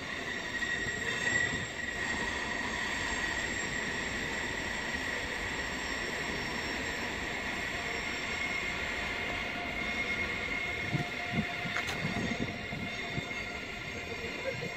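Siemens Velaro TR high-speed electric train running slowly through station tracks with a steady high-pitched squeal over a low rumble. A few low thumps come near the end.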